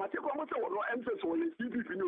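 Speech only: a person talking without a break.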